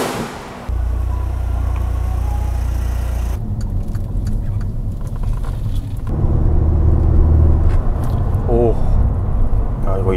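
Mercedes-Benz SLK200 (R172) engine and road noise heard from inside the cabin while driving, a steady low drone that gets louder about six seconds in.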